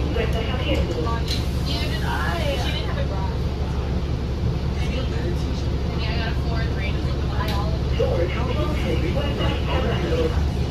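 Steady low hum of a 2019 New Flyer XD60 articulated diesel bus idling while stopped, heard from inside the cabin, with a voice speaking over it twice.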